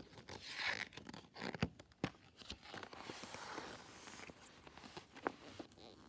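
Paper rustling and sliding as a large picture book's page is turned by hand and smoothed flat, with a few light taps along the way.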